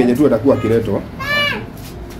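A puppy gives one short, high whine about a second in, rising and then falling in pitch.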